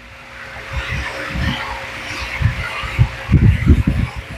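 Motorboat underway on a river: a steady engine hum under a rush of wind and water, with wind buffeting the microphone in heavy low thumps that grow stronger in the second half.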